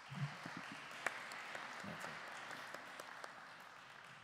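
Audience applauding, the clapping rising quickly at the start and then slowly dying away.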